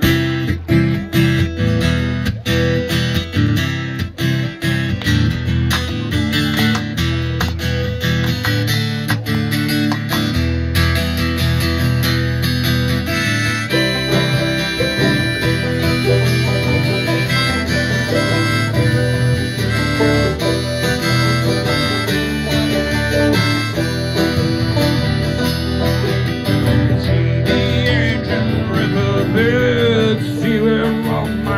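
Live acoustic band playing a song's instrumental opening: strummed acoustic guitar and mandolin, with sustained harmonica notes coming in about halfway through.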